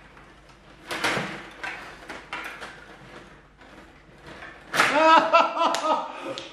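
Stiga table hockey game in play: several sharp plastic knocks and clacks as the rods, players and puck strike each other and the boards. A short voiced exclamation comes near the end.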